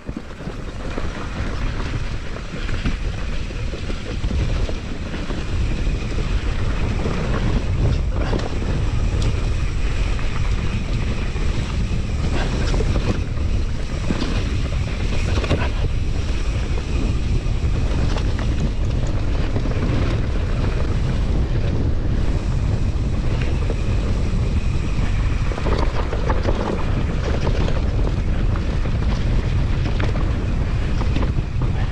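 Wind buffeting the microphone of a mountain bike rider descending a rough dirt trail, with steady tyre rumble and occasional knocks and rattles from the bike over the ground. It gets louder about five seconds in as the bike picks up speed.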